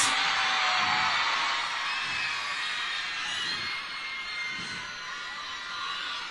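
Concert audience, mostly women, cheering and screaming in high voices in answer to the singer's greeting. It starts loud and gradually dies down.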